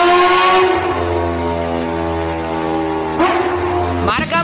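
Kawasaki Ninja H2R's supercharged inline-four engine revving, its pitch rising for about the first second and then holding a steady high note. A brief sharp burst comes about three seconds in.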